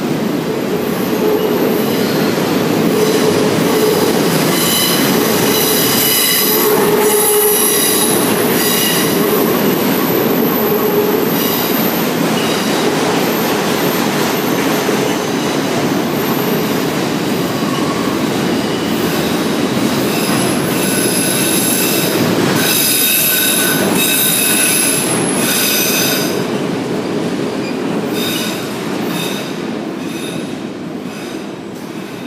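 CSX freight train of autorack and boxcars rolling past close by, a loud continuous rumble with steel wheels squealing on the rails in high-pitched whines that come and go. The noise eases near the end as the last car passes.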